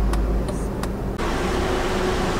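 Steady road-traffic noise heard from inside a parked car: a low rumble at first, changing abruptly about a second in to an even hiss with a faint steady hum.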